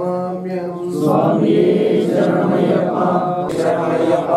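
Men chanting Hindu devotional mantras during an Ayyappa puja. One long held note opens, then more voices join about a second in, and the chant grows louder.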